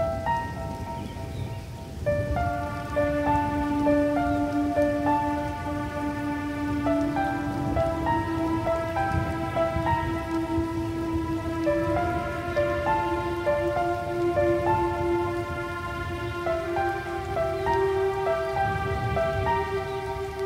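Slow new-age electronic instrumental music: a synth melody of short repeated notes over a held low note that steps up in pitch twice, with a steady patter of rain mixed underneath. The music fills out about two seconds in.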